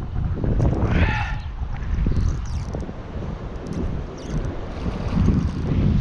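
Wind buffeting the microphone, an uneven low rumble that rises toward the end, with a brief voice-like sound about a second in.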